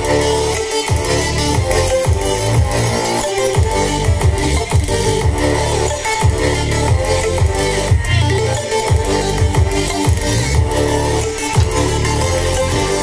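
Bass-heavy electronic dance music played through a D10 OK amplifier board into a subwoofer and speaker bar, with the amplifier running off a 12 V motorcycle battery and an equalizer mode chosen from its remote. The bass beat is strong and steady.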